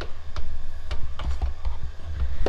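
Uneven low rumble of wind on the microphone, with scattered light clicks and taps from handling the camera and the heater.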